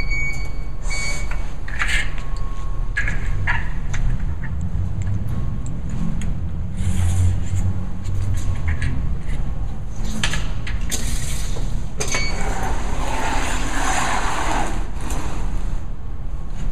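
Steady low rumble of machinery or engine noise. Over it come a few short high beeps and clicks as the keys of a ground-penetrating radar control unit are pressed, then rustling handling noise as the radar cart and its cable are moved.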